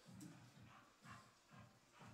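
Faint sounds of a dog close by, over a steady rhythm of low thuds, a little over two a second, from footsteps on a hard floor.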